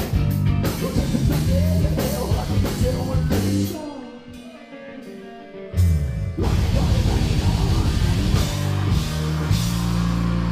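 Live heavy metal band playing at full volume: distorted guitars, bass and a drum kit. About four seconds in the band drops away to a brief, thinner, quieter passage, then crashes back in all together just before six seconds.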